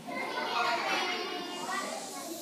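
A crowd of children talking and calling out all at once, the chatter swelling louder about half a second in.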